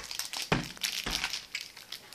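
Crinkling and crackling of plastic packaging being handled, with two knocks about half a second and a second in.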